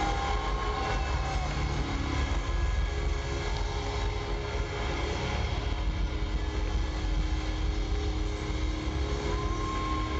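Live rock band playing loud, with distorted electric guitars, bass and drums. It is picked up by a camera microphone in the crowd that overloads, blurring it into a dense, unbroken wall of sound.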